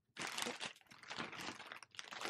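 Clear plastic packaging on a bundle of makeup brushes crinkling irregularly as the packs are handled and shifted.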